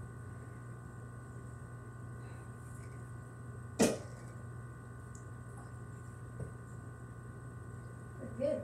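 An adjustable floor lamp's arm being handled and repositioned: one sharp knock about four seconds in and a faint click a couple of seconds later, over a steady low hum.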